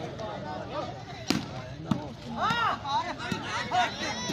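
Sharp smacks of hands striking a volleyball during a rally, the loudest about a second in and a few more later, amid the shouting voices of players and crowd.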